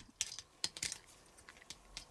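Several faint, scattered clicks and taps of plastic parts as a transforming robot action figure's leg and foot are worked by hand and pried with a pick tool.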